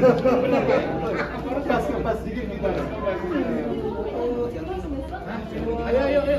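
Several people talking at once: lively chatter of a small group.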